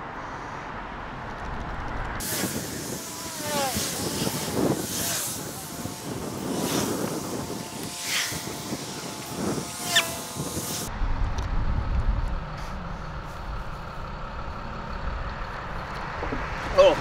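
Heavy road traffic with a large vehicle braking: a loud hiss with squealing, gliding brake tones from about two seconds in until about eleven seconds, then a low engine rumble.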